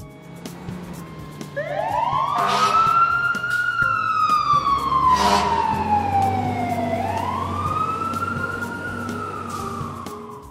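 Wailing emergency-vehicle siren, added as a sound effect, that starts about a second and a half in. It rises, falls slowly, then rises again and begins to fall near the end. Three short noisy blasts come on top of it.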